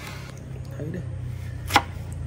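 A kitchen knife slicing through a yellow dragon fruit and striking the wooden cutting board, with one sharp knock of the blade near the end.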